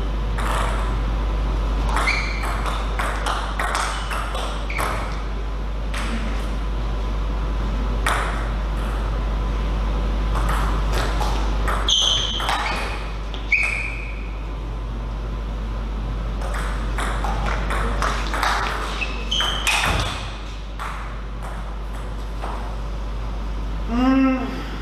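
Table tennis rallies: the celluloid ball clicking off the rackets and the table in quick, irregular runs, with a few short high squeaks in between and a steady low hum underneath.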